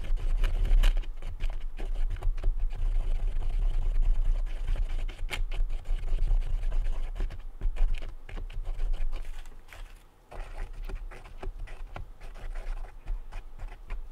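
A plastic zip tie stirring two-part epoxy on a piece of cardboard on a wooden bench: irregular scraping and small taps over low dull thuds, with a brief lull about ten seconds in.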